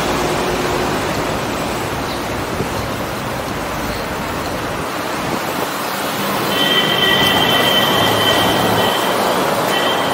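Steady rushing noise of a bicycle ride through city traffic under a flyover: wind on the microphone and passing road traffic. About two-thirds of the way in, a steady high squeal sounds for about three seconds, and briefly again near the end.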